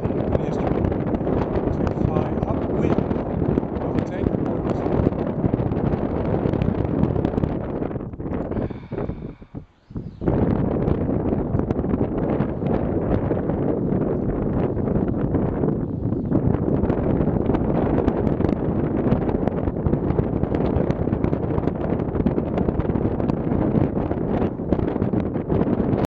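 Wind buffeting the microphone outdoors in a steady, low rumble. It dies away for a moment about nine seconds in and then comes straight back.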